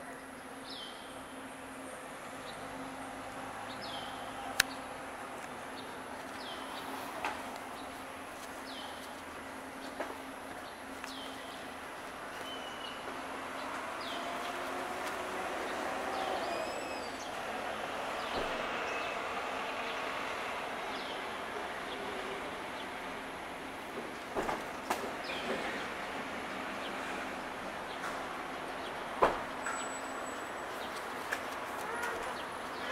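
Outdoor ambience. A bird gives a short, high, falling call about every second and a half through the first half, over a steady low hum. Distant vehicle noise swells and fades about halfway through, and a few sharp clicks stand out, the loudest near the start and near the end.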